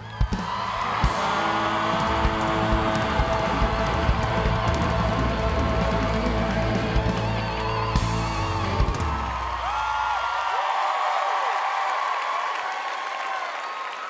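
Live rock band playing its final held chord: electric guitar, bass and drums with a few hard drum hits. The band stops about ten seconds in, and the audience applauds and cheers, with whoops, to the end.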